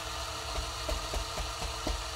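A Niche Zero coffee grinder's motor and conical burrs run steadily with almost no beans inside. Faint taps, about four in all, come as the silicone bellows on top is pumped to blow the last retained grounds out of the chute.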